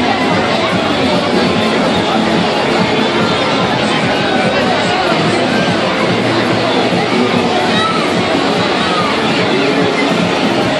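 Fairground crowd: many people talking at once, with music playing.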